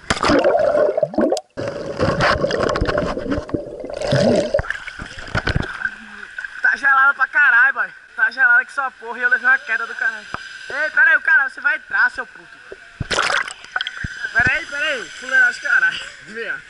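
An action camera splashing into a swimming pool and tumbling through churning water for several seconds. Then comes muffled underwater sound: a steady high hum with a person's wavering, voice-like sounds, and another splash near the end.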